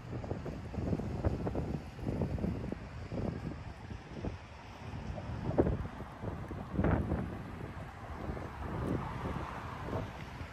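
Wind buffeting a phone's microphone: a low, uneven rumble that comes and goes in gusts, loudest about seven seconds in.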